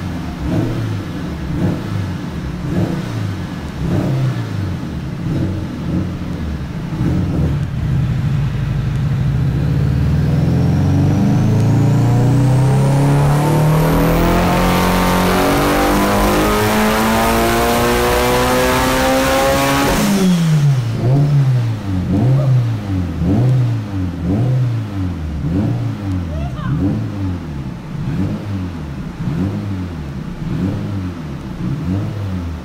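Turbocharged 2.2-litre stroked Nissan SR20 four-cylinder on a chassis dyno, running unevenly and then making a full-throttle pull that climbs steadily in pitch for about twelve seconds toward its 8500 rpm limit. A thin high whistle rises with it before the pull cuts off abruptly. The engine then falls into quick throttle blips, about one a second.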